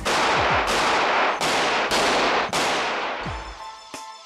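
A pane of glass being smashed: about six loud crashing blows, each trailing off in a noisy rush. Music comes in near the end.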